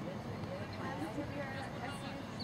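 Distant voices calling out across an outdoor soccer field, faint over a steady background hum.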